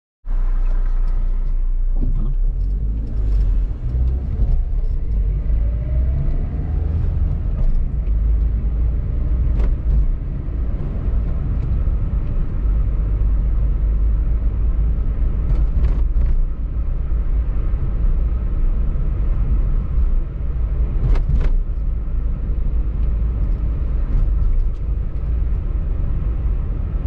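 Car cabin noise while driving slowly: a steady low rumble of engine and tyres on the road, with a few brief clicks along the way.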